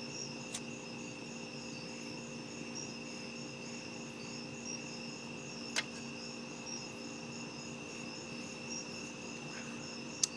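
Crickets chirping steadily, with a faint steady hum beneath. Two brief clicks, about half a second in and just before the six-second mark.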